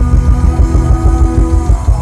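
Live rock band playing loudly: electric guitars, keyboard and a drum kit over a fast, pulsing low end, with one held note sliding down near the end.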